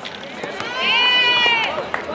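A single long drawn-out shout from someone at the basketball game, held about a second, rising in pitch at the start and falling away at the end, over crowd and court noise with scattered short knocks.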